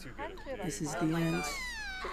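A high-pitched voice whining, with a long wail that falls steadily in pitch through the second half, mixed with other voices.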